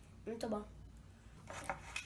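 A girl's brief voice sound, followed by a few light clicks and knocks.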